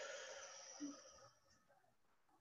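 A person's slow, deep breath out during a guided breathing exercise, soft and airy, fading away a little over a second in, then near silence.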